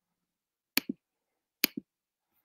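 Two sharp clicks a little under a second apart, each followed at once by a short, duller knock.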